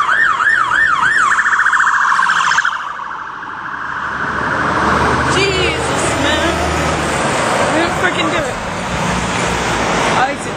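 Police car siren yelping up and down about twice a second, switching to a fast warble and cutting off about three seconds in. Road traffic then builds, with a vehicle passing.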